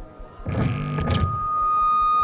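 Amplifier feedback from the stage sound system: a steady high whine that sets in just after a brief spoken "okay folks" and holds without changing pitch.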